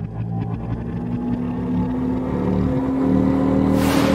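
Intro sound design: a low droning rumble with sustained tones that grows steadily louder, one tone slowly rising in pitch, ending in a loud whoosh near the end.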